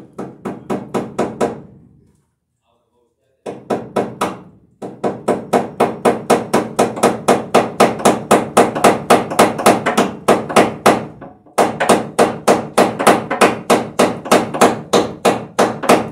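A hammer striking overhead wooden joists in fast, even blows, about four a second, in runs broken by short pauses.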